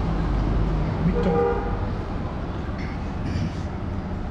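A vehicle horn sounds once, briefly, about a second in, over a steady low rumble of road traffic.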